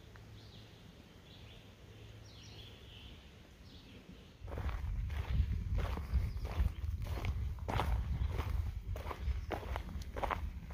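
A hiker's footsteps on a dirt forest trail, starting about four and a half seconds in after a quiet stretch, with a low rumble beneath them.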